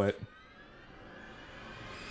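The end of a spoken word, then a faint rising swell: several tones slowly climb in pitch and grow steadily louder, an edited transition riser leading into music.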